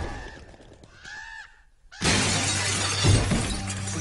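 After a short fade to near quiet, a sudden loud crash of shattering glass bursts in about halfway through and keeps going as a dense noisy tail.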